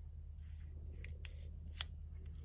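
A few small clicks from a hand handling a metal camera lens, the sharpest about 1.8 seconds in, over a low steady hum.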